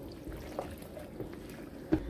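A utensil stirring a chunky, saucy stew of pork, potatoes, carrots and hominy in a slow-cooker crock: faint, wet stirring sounds.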